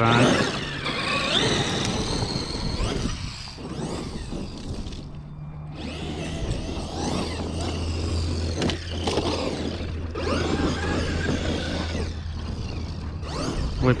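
Traxxas X-Maxx RC monster truck's brushless electric motor whining up and down in pitch with the throttle, over the noise of its tyres on dirt, with a brief lull a little past the middle.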